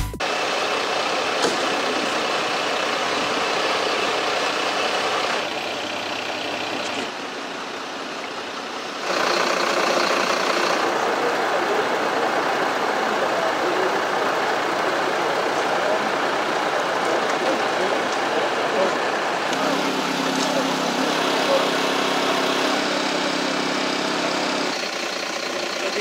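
Fire engine diesel engines idling steadily, with a steady low hum between about 20 and 25 seconds in. The sound changes abruptly several times as the shots change.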